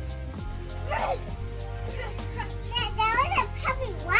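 Background music with a steady bass line, with short high pitched voice-like calls over it, about a second in and again past the three-second mark.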